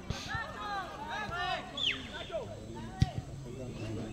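Faint, scattered shouts and calls of players and onlookers across an open football pitch, with one sharp knock about three seconds in.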